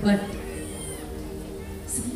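A short, whiny wordless vocal sound right at the start, amplified through the stage PA, over a steady held keyboard chord.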